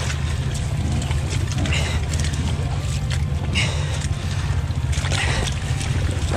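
Suzuki dirt bike engine running low and steady while the bike is worked through deep mud, with a short spattering burst about every second and a half to two seconds.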